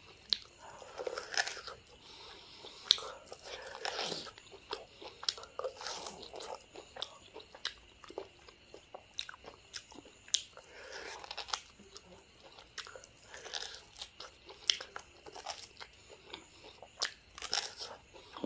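Close-up biting and chewing as meat is gnawed off a beef bone, with many sharp, irregular clicks and crunches from the mouth and bone.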